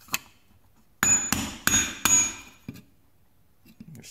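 Sharp clicks and clatter of hard plastic parts being handled as terminals are pressed into a blower fan control module's connector housing. There is a single click near the start, a dense cluster of knocks lasting just over a second starting about a second in, and one more click shortly after.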